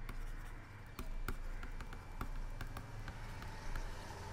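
Stylus scratching and tapping on a tablet screen during handwriting: a scatter of faint, sharp clicks at irregular intervals over a low, steady background hum.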